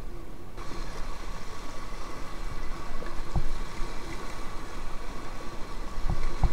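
Rushing, churning white water of a river rapid in high water, heard from an inflatable kayak riding through it. A single low knock comes a little past the middle.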